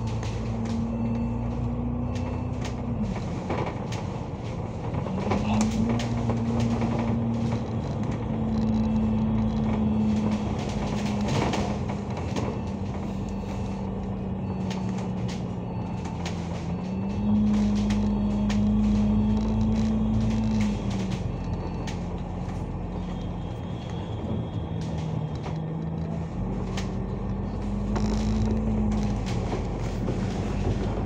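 Alexander Dennis Enviro500 MMC double-decker bus heard from inside while driving: a steady drivetrain hum whose pitch steps up and down several times as the bus pulls away and changes speed, over a low road rumble with scattered light rattles.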